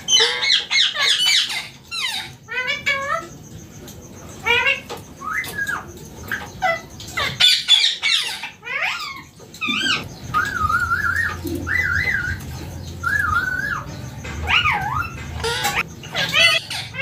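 Indian ringneck parakeet calling: repeated rapid chirps and squawks that sweep up and down in pitch, with a run of wavering, warbled notes around the middle.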